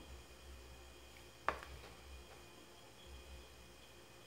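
Quiet room with a faint steady hum, broken once about a second and a half in by a single sharp click: a small plastic glue tube being set down on the wooden craft board.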